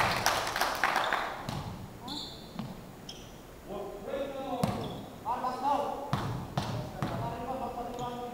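Basketball bouncing on a wooden gym floor a few times as the shooter readies a free throw, the knocks echoing in a large hall, with voices calling out. A burst of clapping and shouting at the start.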